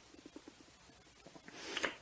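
A short pause in a talk: faint small mouth or throat sounds, then a breath drawn in near the end, just before speech starts again.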